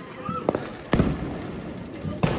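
Fireworks going off: two sharp bangs, about half a second in and about a second in, the second the loudest with a rumbling tail, among lighter crackling.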